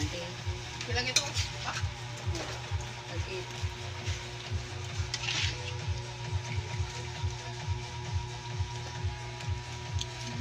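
Metal ladle scraping and clinking against a wok as sauce is scooped out and poured over the dish, with a few sharp clicks, over the light sizzle of the sauce in the hot pan.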